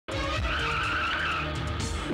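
Film chase soundtrack: motorcycle and jeep engines running with a high, wavering squeal like skidding tyres, over background music.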